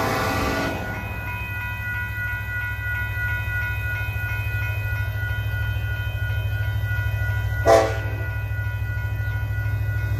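A grade-crossing warning bell ringing steadily as a freight locomotive's horn finishes a long blast in the first second, then gives one short blast a little before eight seconds in. A low rumble from the approaching train builds toward the end.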